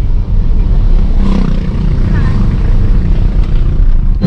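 Steady low rumble of a car's engine and road noise heard inside the cabin while driving, with faint voices under it.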